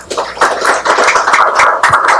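Audience applauding, a dense patter of many hands clapping that breaks out at once and keeps on steadily.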